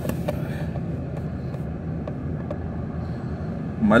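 Suzuki Mehran's small three-cylinder engine idling, heard from inside the stationary car's cabin as a steady low hum, with a few faint ticks.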